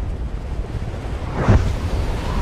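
Trailer sound design of rushing wind through clouds: a steady low rumble with a deep whoosh about one and a half seconds in.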